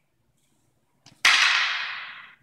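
A single sharp crack of wooden fighting canes striking together, trailing off over about a second.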